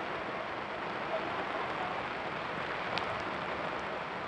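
Steady outdoor hiss of ambient noise at a football match on a soaked pitch, with faint distant shouts from players and one sharp knock about three seconds in.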